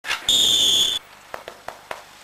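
A traffic policeman's whistle blown in one loud, steady, shrill blast of under a second, followed by four faint clicks.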